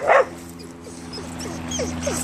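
A dog excited at another dog across a fence: one short loud bark at the start, then a steady whine broken by short falling yips.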